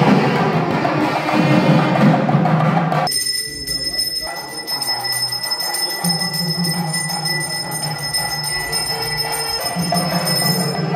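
Festive temple band percussion of drums and clappers, the mangala vadya music that welcomes a guest at a temple. About three seconds in it cuts to the steady ringing of a puja bell over softer music.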